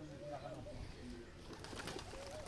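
A pigeon cooing faintly with a wavering call near the start, followed by a few quieter low notes.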